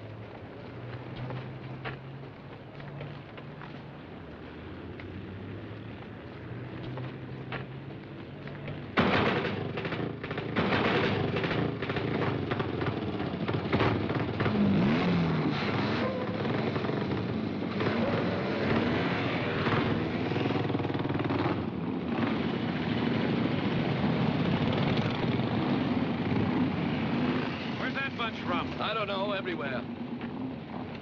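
A pack of motorcycles idling low, then about nine seconds in many engines open up at once, loud and ragged, revving up and down as the bikes ride off together.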